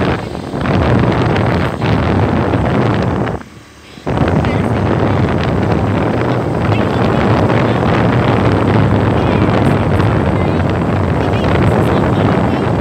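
Loud wind buffeting on a hand-held phone microphone while riding in the open at speed, a rough rumble that drops out briefly about three and a half seconds in.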